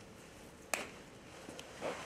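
A single sharp click about three-quarters of a second in, then a fainter tick, over quiet room tone.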